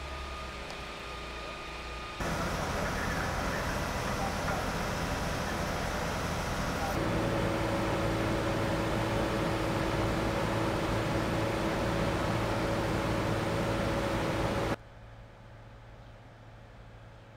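Steady outdoor street sound with engine hum, changing abruptly with each edit. From about seven seconds in, a steady engine drone with a low hum fits the parked Iveco fire engine idling. It cuts off suddenly near the end, leaving much quieter street sound.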